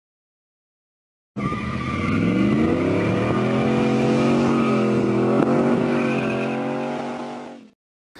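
Full-size truck engine accelerating along a road. It cuts in abruptly a second or so in, rises in pitch over about a second, then holds high and steady before fading out near the end.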